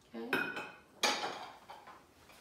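White dinner bowls clinking as they are set down onto plates: two sharp clinks about two-thirds of a second apart, the first ringing briefly.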